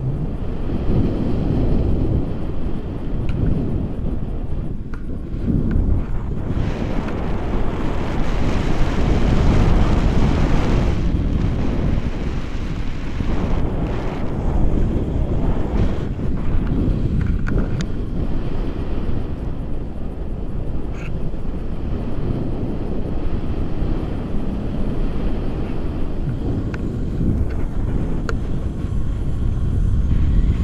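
Wind from a paraglider's flight rushing over the camera microphone: a loud, gusting rumble, with a stretch of stronger hiss about seven to eleven seconds in.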